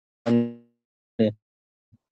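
A man's voice making two short wordless sounds, the first about half a second long and fading out, the second briefer about a second later.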